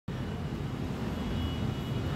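Steady low background rumble with no distinct events, the kind of ambient hum that distant traffic or a running fan gives.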